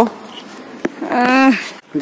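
A person's drawn-out voiced sound with a wavering pitch, lasting under a second, starting about a second in after a faint click; it cuts off suddenly just before the end.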